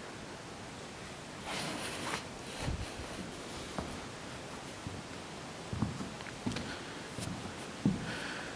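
Quiet room tone with soft rustling of a handheld camera being carried, and a few light thumps of footsteps on a bare concrete floor.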